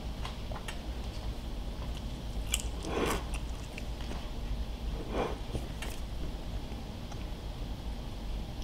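A person chewing a mouthful of crispy air-fried steak fry, with a few soft crunches.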